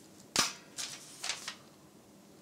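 A slip of paper being handled: one sharp snap early on, then a few soft rustles.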